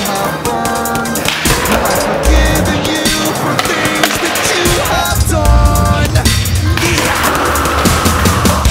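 Skateboard on a concrete floor, its wheels rolling and the board clattering and slapping down during flip-trick attempts, mixed with loud background music.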